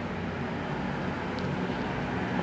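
Brand-new through-the-wall heating and air conditioning unit running with a steady hum and a low drone, with one faint tick midway.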